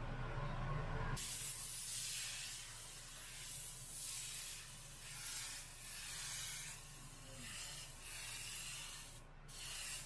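Omni 3000 airbrush spraying paint onto a T-shirt: a steady air hiss that starts about a second in, swells and eases with each pass, and drops off briefly near the end.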